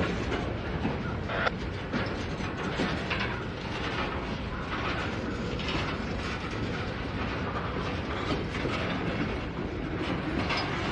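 GREX ballast hopper cars of a rock train rolling past close by: a steady rumble of steel wheels on the rails, with scattered clanks and clicks from the wheels and couplers.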